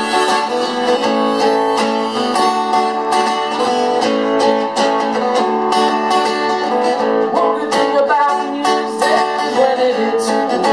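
Steel-string acoustic guitar played in an instrumental passage between sung lines, a steady run of strummed and picked notes.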